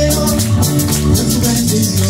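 Live band music through PA speakers: electric guitar and electronic keyboards over a bass line, with a quick, steady shaker-like beat.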